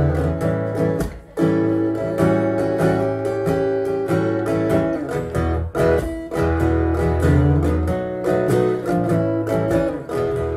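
Solo electric guitar strummed live, playing chords in a steady rhythm, with a short break about a second in.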